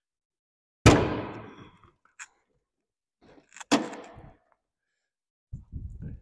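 Hood latch and steel hood of a 1980 Pontiac Firebird Trans Am being released and lifted. A sharp metallic clunk with a short ring about a second in is the loudest sound. It is followed by a small click and a second clunk near the middle, then some low handling noise as the hood goes up.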